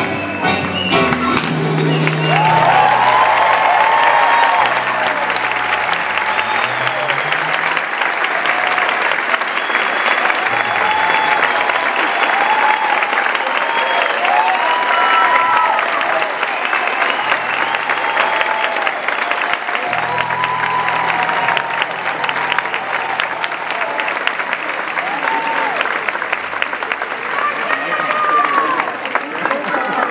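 A joropo song's final notes end about a second in, then a large theatre audience applauds and cheers, with many shouts and whoops over the clapping throughout.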